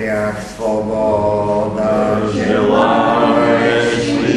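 Congregation singing a hymn, the voices holding long notes with a brief break about half a second in.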